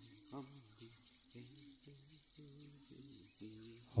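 Quiet steady hiss of running water in the background, with faint low voice sounds in short pieces through most of it.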